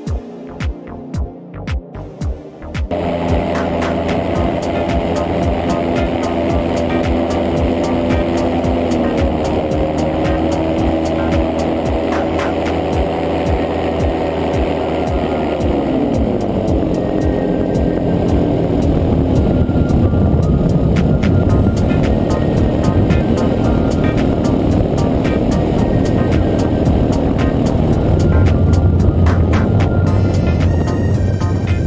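Background music with a throbbing beat, then about three seconds in, the loud engine and propeller of an ultralight trike, heard from its open cockpit with wind noise. The engine's pitch drops about a third of the way in and slides down further about halfway through, as the engine, which has developed a problem, loses power.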